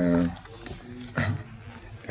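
A man's voice, hesitating: a drawn-out flat 'ehh' at the start and a short vocal sound just after a second in, with quiet room tone between.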